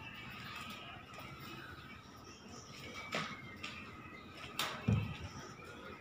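Faint background music under a quiet steady background, broken by a few sharp knocks; the loudest is a heavy thump about five seconds in.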